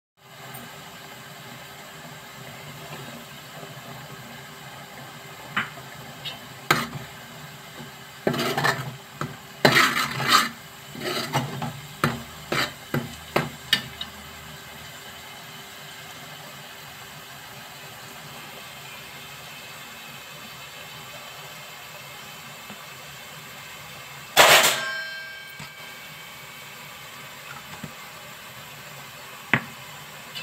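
A steel ladle and utensils clinking and knocking against a large metal cooking pot: a run of sharp knocks in the first half, then one loud metallic clang that rings on briefly about five seconds before the end, over a steady low hiss.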